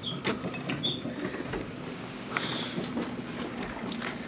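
Irregular clicks, knocks and light rattling from a loaded metal luggage cart and the gear on it being handled, with a couple of brief high squeaks near the start.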